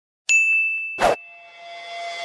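Logo-sting sound effect for an animated title card: a bright ringing chime struck just after the start with a few faint ticks, then a short whoosh hit about a second in, the loudest moment, leaving a lingering ringing tone that swells toward the end.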